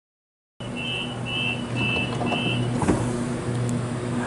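Sydney Trains double-deck electric train standing at a platform with a steady hum. Four short high beeps of a door-closing warning sound in quick succession, followed by a single knock about three seconds in.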